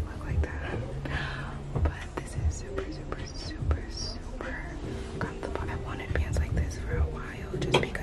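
A woman singing softly under her breath, close to the microphone, with a few dull low thumps along the way.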